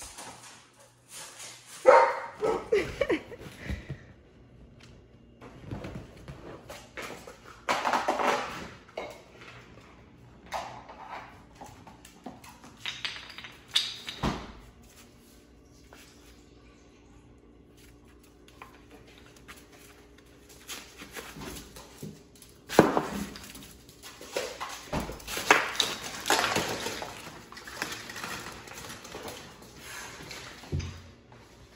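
Beagle puppy barking and yipping in several short bursts, with quieter stretches between them.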